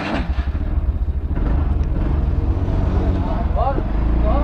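TVS Ntorq 125 scooter's single-cylinder engine idling with the scooter standing still, a steady low running sound that grows slightly louder.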